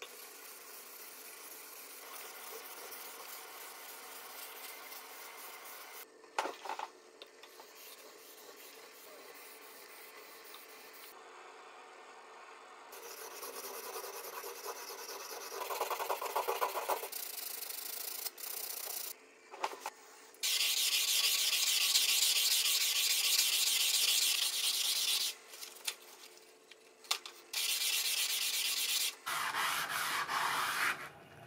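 Hand polishing of a hard steel Deba knife blade on a whetstone and with sandpaper: repeated back-and-forth scraping strokes of abrasive on steel, in several separate stretches. It is quieter in the first half and loudest and brightest in the second half.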